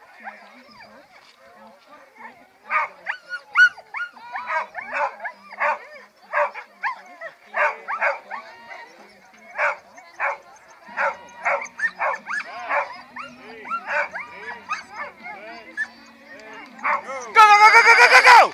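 A dog held at a race start line barks and yelps in quick, excited bursts, over and over, straining to go. Near the end comes a louder, sustained call.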